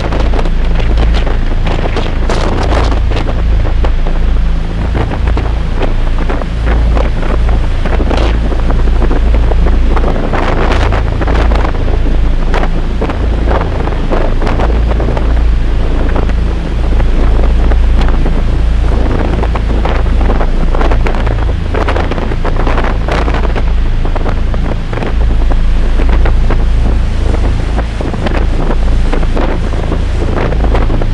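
Strong wind buffeting the microphone in uneven gusts on a moving ship's open deck, with a steady low hum from the ship running underneath and the sea rushing along the hull.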